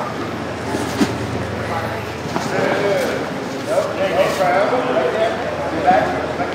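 Indistinct voices of spectators and coaches talking and calling out in a large, echoing hall, with a couple of faint knocks.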